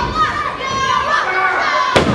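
High-pitched children's voices from a wrestling crowd, shouting and calling out over each other in a large hall. A single sharp thump lands at the very end.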